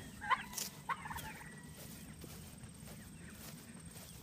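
Young turkeys in a pen giving two short chirping calls about a second apart, then faint background only.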